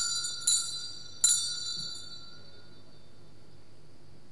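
Small altar bells struck three times in quick succession, each a bright, high metallic ring that dies away, the last fading out a second or so later. They ring at the priest's communion.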